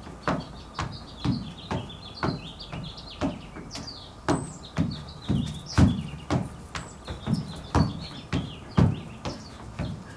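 Dance steps in flat shoes thudding on a wooden deck in a steady rhythm, about two a second, while small birds chirp in the background.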